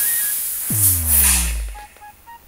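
Loud bang with a rushing hiss and a deep boom that falls in pitch and fades near the end: an explosion sound effect standing for the bicycle tyre bursting, over electronic music.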